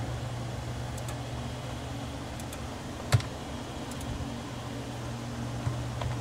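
A steady low background hum with a few scattered clicks from the computer's mouse and keyboard as the drawing is worked. The sharpest and loudest click comes about halfway through.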